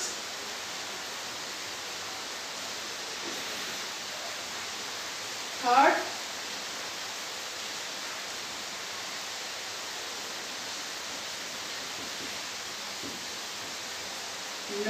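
Steady background hiss with no distinct sounds in it, broken once by a short spoken word about six seconds in.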